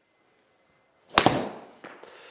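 A golf wedge striking a ball off a hitting mat about a second in: one sharp crack that fades quickly, followed by a smaller click near the end.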